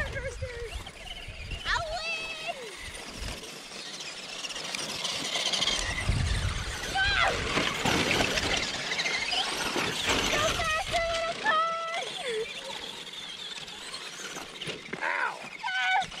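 Traxxas RC trucks racing over a dirt track, giving a steady hiss throughout. Short high-pitched shrieks and shouts from children break in about two seconds in, around seven seconds, several times between ten and twelve seconds, and near the end. Low rumbles of wind on the microphone sit under the start and around six seconds.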